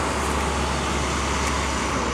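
Steady road traffic noise: a continuous low rumble of vehicle engines and tyres.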